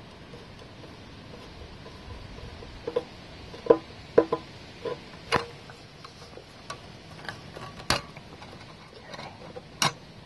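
Irregular metallic clicks and knocks of hand tools, bolts and the engine's mounting hardware as the seized old Briggs engine is worked free of the blower deck. The strongest knocks come about four seconds in.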